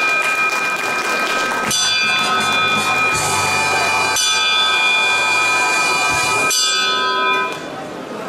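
Brass ship's bell rung by hand, struck several times about a second or two apart, each clang ringing on in long, steady tones. The ringing dies down near the end.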